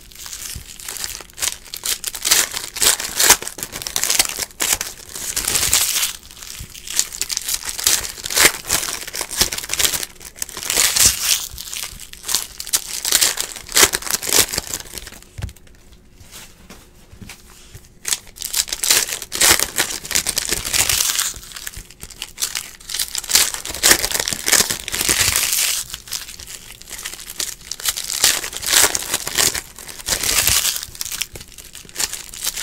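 Foil trading-card pack wrappers (Panini Prizm football packs) crinkling in the hands as packs are opened and cards are handled and stacked, in irregular bursts with a quieter lull of a couple of seconds past the middle.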